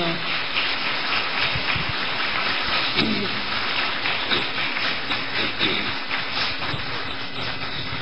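An audience applauding: many hands clapping in a steady, dense clatter.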